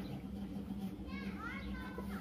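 Faint background voices of children, with a few high calls that glide up and down in the second half, over a steady low hum.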